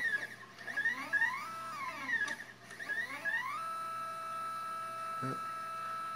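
Stepper motor of an Orion SkyView Pro GoTo mount driving its brass right-ascension gears, with a whine that glides up and down in pitch over the first few seconds, then holds steady. The motor and gears turn, but the telescope does not move on that axis.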